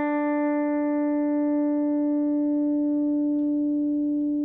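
A single electric guitar note sustaining through an MXR Dyna Comp compressor pedal, holding at an almost even level while its upper overtones slowly fade. The long, squashed sustain is the compressor at work: the note seems to go on forever.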